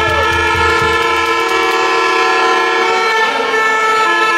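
Several horns blown together by demonstrators, a loud, steady chord of held notes, with low drum beats fading out in the first second.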